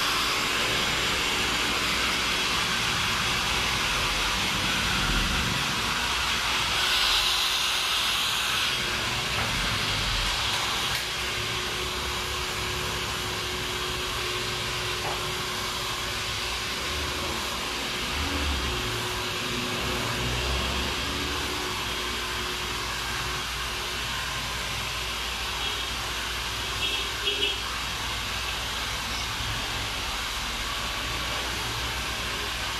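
Handheld hair dryer blowing steadily: a continuous rush of air with a faint steady hum under it, a few light clicks near the end.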